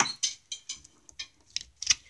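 Light handling noise close to the microphone: a handful of small, irregular clicks and rustles over two seconds.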